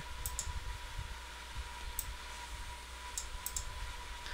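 A few faint computer mouse clicks: two near the start, one about two seconds in, and three close together near the end. Under them runs a steady low electrical hum with a thin high whine.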